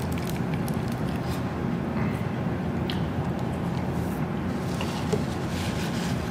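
Two people chewing chicken wings, with faint, scattered soft wet clicks and smacks over a steady room hum.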